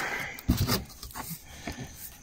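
Cardboard carton flaps and polystyrene packing being handled as the box is opened, with a sudden knock and rustle about half a second in, then quieter rustling.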